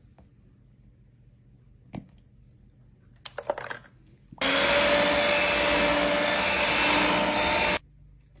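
A few faint taps as eggs are cracked into the bowl, then an electric mixer runs steadily for about three seconds, starting a little past the middle and cutting off abruptly just before the end, beating the yolks into stiffly whipped egg whites.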